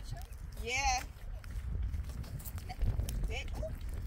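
A person's short, high, wavering cry about a second in, wordless, followed by a few faint voice fragments later on, over a steady low rumble of wind on the microphone.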